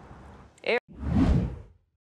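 A TV news graphics transition whoosh: one bass-heavy swoosh that swells and fades over about a second, then cuts to silence.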